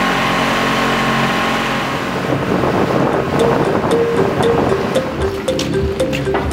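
Outboard motor on a water taxi running steadily, with water rushing past the hull. Background music with a melody and a beat comes in over it about two to three seconds in.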